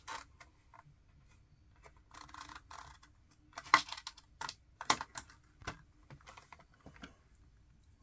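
Scattered light clicks and short rustles of HeroClix plastic miniatures and their packaging being handled during unpacking. Two sharper clicks near the middle are the loudest.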